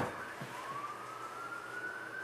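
Mac Pro's optical disc drive spinning a CD: a thin whine that rises slowly in pitch from about half a second in.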